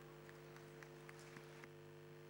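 Near silence: a faint steady low hum with a few faint ticks in the first second and a half.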